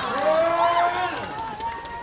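A crowd of spectators shouting and cheering after a point is won in a volleyball match, many voices at once, fading away in the second half.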